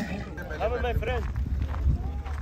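People talking in the background, with a steady low rumble of wind on the microphone.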